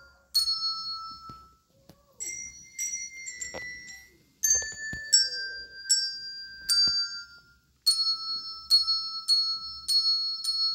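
A set of children's coloured handbells rung one note at a time, each struck note ringing on, picking out a slow tune that quickens to about two notes a second near the end.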